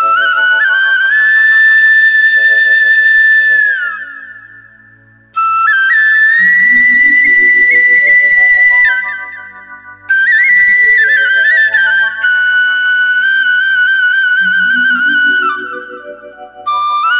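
Instrumental music intro with a high, flute-like melody of long held notes in three phrases, each fading out, over a rising stepwise arpeggio and a steady low pulse.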